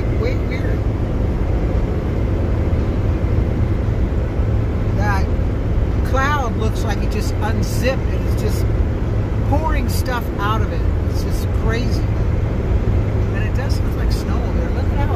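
Steady low road and wind rumble of a car driving with its windows down, with a few short rising-and-falling pitched sounds about five to six seconds in and again about ten seconds in.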